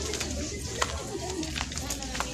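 A dove cooing in low, wavering calls, with a few sharp ticks.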